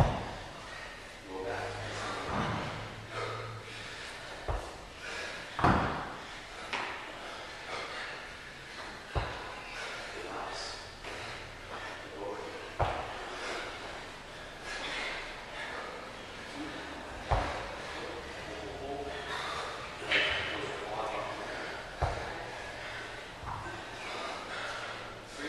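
Scattered thuds on a gym's rubber floor, about seven of them at irregular intervals, over a background of indistinct voices in a large room.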